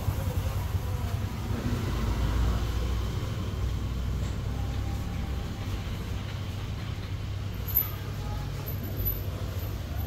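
Steady low background rumble, with a brief faint click about eight seconds in.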